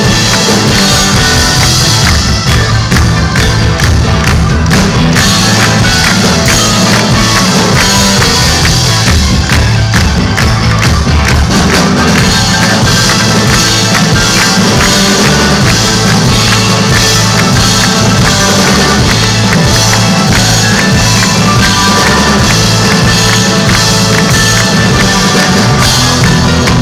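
Live rock band playing an instrumental passage with electric guitars, drums and keyboards, with no singing.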